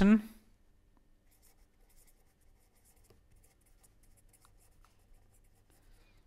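Pen writing on paper: faint, intermittent scratching and light ticks of the tip as words are written out by hand.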